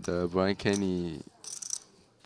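A man speaking briefly for about the first second, then a short, faint high-pitched rattle of clicks about one and a half seconds in.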